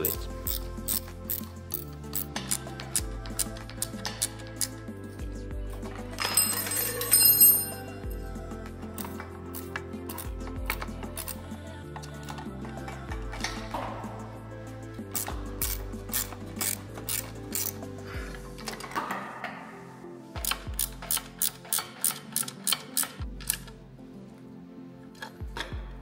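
Background music with the clicking of a ratchet wrench as bolts are tightened, in uneven runs of clicks and a quicker, even run near the end.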